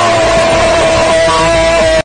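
Very loud, heavily distorted meme sound: a dense wall of noise with one held tone running through it, cutting off suddenly at the end.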